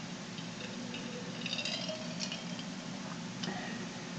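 A quiet sip from a glass mug of an iced cocktail, with a few faint small clicks of ice against glass, mostly around the middle.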